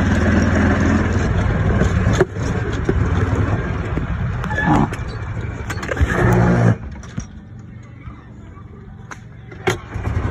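Golf cart motor running as the carts drive across the fairway, a steady low hum that rises briefly a couple of times. It drops away about seven seconds in, and a single sharp click comes near the end.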